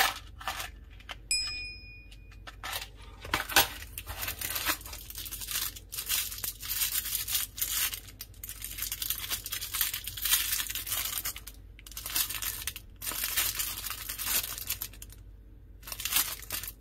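Plastic wrapping crinkling and rustling as small RFID key fobs in plastic bags are handled and unwrapped. A short ringing ding sounds about a second in.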